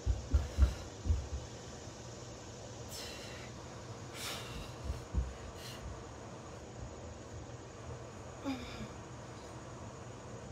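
A person's hard, forceful exhales while pressing a kettlebell overhead, short hissing breaths spaced a second or more apart, with a short voiced breath near the end. A few low thumps come in the first second.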